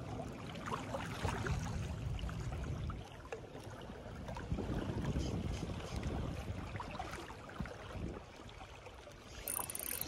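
Wind rumbling in gusts on the microphone, over small waves lapping against shoreline rocks.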